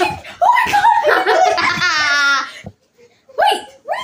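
Girls laughing loudly and excitedly, with a long high-pitched squeal about two seconds in, then a brief pause before more voice near the end.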